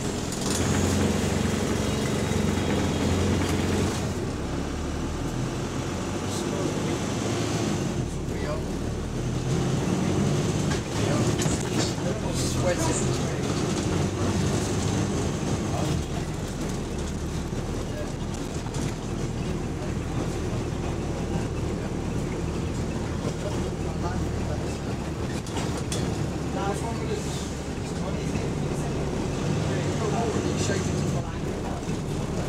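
Interior of a moving bus: the engine running and road noise, steady throughout.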